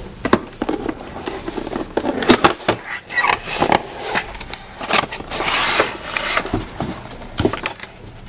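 A cardboard toy box being opened by hand and its clear plastic tray pulled out: irregular crinkling, rustling and tapping of cardboard and plastic packaging, with louder handling bursts in the middle.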